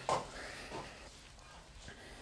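A brief throat noise from a man right at the start, then faint room tone with a few soft small sounds.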